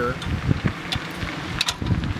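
An Easy Troller troll plate being swung up on its hinged bracket on the outboard: a few short clicks and knocks about half a second in and again near the end, over a low rumble.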